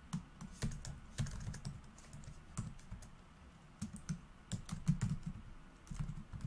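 Typing on a computer keyboard: irregular keystrokes in quick runs, with a short lull about halfway through.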